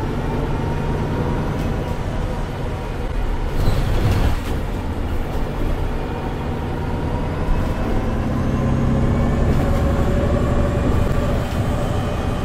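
MAN A22 Euro 6 city bus with Voith automatic transmission heard from inside the cabin while under way: the engine and drivetrain run steadily over road noise, with a brief knock about four seconds in. Near the end the engine and transmission pitch climbs as the bus accelerates.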